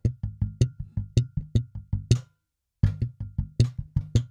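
Slap electric bass playing a funk groove in G: thumb-slapped low notes alternating with sharp plucked, popped notes in a thumb, pluck, thumb, thumb, pluck pattern, about five notes a second. The sound cuts out completely for about half a second past the middle, then the groove resumes.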